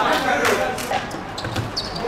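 Players' voices calling out on a hard outdoor court, with a few sharp thuds of a football on the hard surface in the first second.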